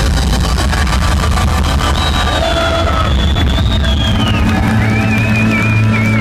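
A live ska-rock band playing loud through the stage PA, heard from within the crowd: heavy steady bass under a high melody line that wavers and glides, with faint crowd voices.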